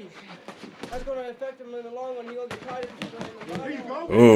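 Men's voices shouting over a bare-knuckle-style gloved fistfight, with several sharp smacks of boxing gloves landing scattered through.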